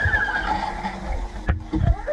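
Underwater audio from a diver's GoPro: a low watery rumble with a high, wavering cry-like tone in the first part, the sound taken for eerie screams, then a few sharp knocks near the end.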